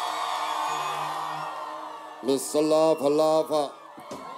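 Live reggae concert sound: a held musical chord, then, about two seconds in, a man chanting a short phrase of several syllables into a microphone over the band.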